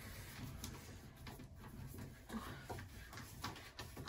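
Faint ticks and scrapes of a hand screwdriver turning a screw in a plywood panel.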